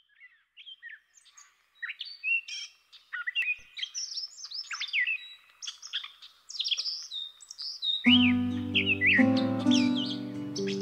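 A busy chorus of birds chirping and calling in short, quick rising and falling notes. About eight seconds in, music with sustained chords starts beneath the birdsong and becomes the loudest sound.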